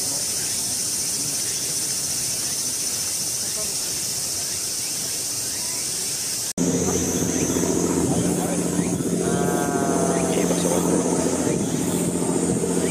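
A steady, high-pitched cicada drone in summer daylight; about six and a half seconds in, the sound cuts abruptly to a louder, steady low engine-like hum, with a voice heard briefly over it.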